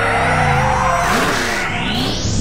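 Added cartoon racing sound effects: a vehicle engine revving up and down with tyres skidding, over background music. A rising whooshing sweep begins near the end.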